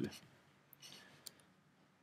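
A few faint, short clicks about a second in, in near quiet after a spoken word trails off.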